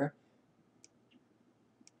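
A pause in speech: near silence broken by three faint, very short clicks.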